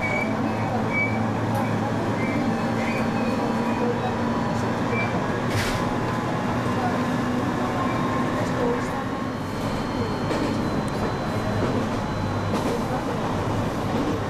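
Interior of a local train on the Uetsu Main Line running steadily at speed: continuous wheel-on-rail and running noise with a low hum, and a brief burst of noise about six seconds in.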